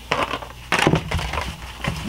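Cured expanding foam crunching and crackling as hands break and pick at it, in irregular bursts with a few sharper cracks, loudest just under a second in.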